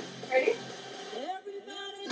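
A person's voice: a short vocal sound about half a second in, then faint sliding tones in a lull between louder music.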